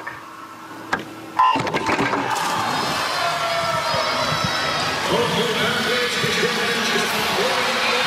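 A swimming race's electronic start signal sounds about a second and a half in, after a short hush. It is followed by steady crowd noise with shouting voices as the race gets under way.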